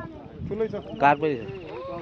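People talking and calling out, with one louder shout about a second in.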